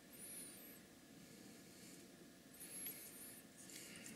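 Near silence with faint handling of a wristwatch: two short groups of thin, high squeaks from fingers on the watch, one near the start and one about two-thirds through.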